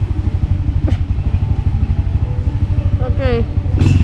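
Small motorbike engine running steadily close by, a low, rapid chugging that holds even throughout. A voice speaks briefly near the end.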